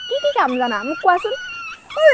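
A woman talking in an animated voice that rises and falls, with a thin, steady high whine about a second in.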